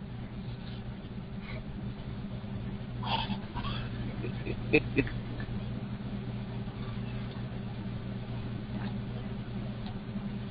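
Steady low background hum, with a faint brief noise about three seconds in and two short sharp sounds half a second apart about five seconds in.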